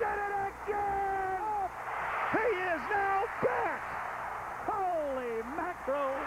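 A man's excited wordless shouts on a broadcast: a long held yell, then short swooping cries and a long falling one, over steady arena crowd noise.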